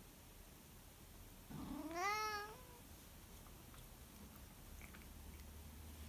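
A domestic tabby-and-white cat gives a single meow about a second and a half in, rising in pitch and lasting about a second.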